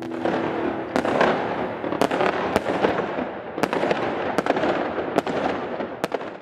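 Fireworks going off: a dense crackling haze with sharp bangs about once a second.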